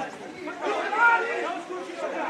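Several people talking and calling out at once, a chatter of overlapping voices with no single clear speaker.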